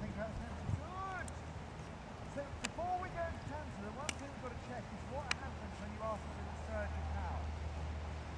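Indistinct voice talking faintly in short phrases, with four sharp clicks spread through it and a steady low rumble underneath that grows stronger near the end.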